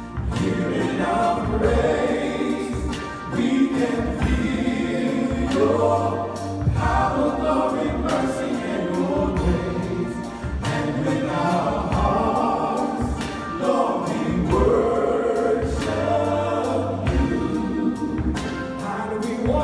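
Male gospel vocal group singing in harmony into microphones, over a steady beat and a strong bass line.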